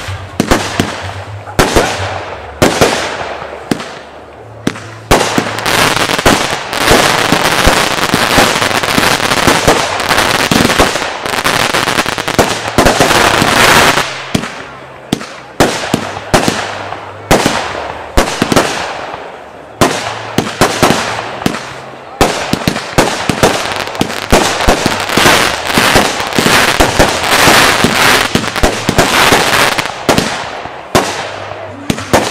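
Klasek 192-shot compound firework battery firing: rapid sharp reports, several a second, over a dense crackle, with a few short lulls between volleys.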